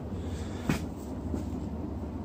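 Steady low background hum with light handling noise and one short click about two-thirds of a second in.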